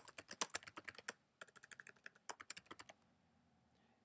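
Computer keyboard typing: a quick run of light keystrokes that stops about three seconds in.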